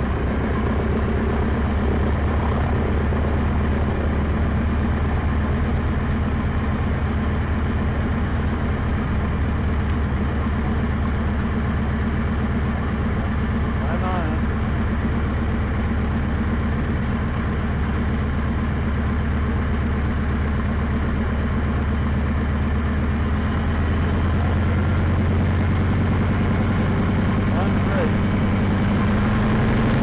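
Biplane piston engine and propeller running steadily at low power while taxiing, heard from the open cockpit. The engine note rises a little in the last few seconds.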